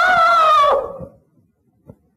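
A high sung note held with a slight waver at the end of a line of a Sindhi devotional song, fading out about a second in, followed by a gap of near silence with one faint tick near the end.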